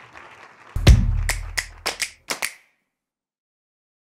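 Faint audience applause, then a sudden deep boom with several sharp claps over it, all cutting off abruptly about two and a half seconds in.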